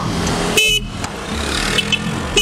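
A car horn gives one short toot about half a second in, over the steady noise of street traffic.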